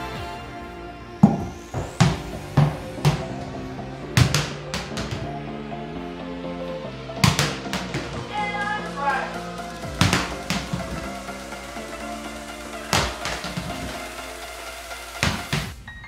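Background music with sharp knocks from a small ball bouncing on a hardwood floor. The first run of bounces comes quicker and quicker as the ball settles, and more knocks follow at irregular intervals.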